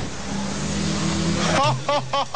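A car engine running with a steady low hum under a noisy rush.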